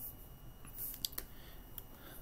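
About four light, irregularly spaced clicks from computer controls.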